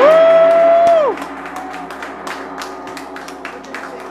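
A large hanging gong rings on after a mallet strike, while a person gives a long whoop that rises, holds for about a second and falls away. Hand clapping follows for the rest of the time.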